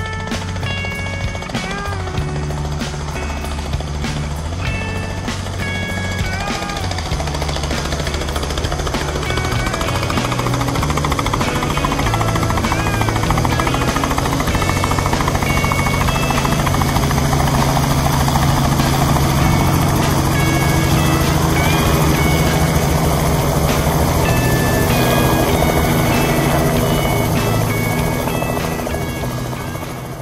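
Robinson R44 light helicopter hovering close by, its two-bladed main rotor and piston engine making a rapid, even chop. The sound grows louder over the first several seconds as the helicopter comes nearer, then holds.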